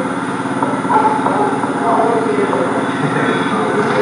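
A steady hum with faint, indistinct voices in the background, heard through loudspeakers in a hall.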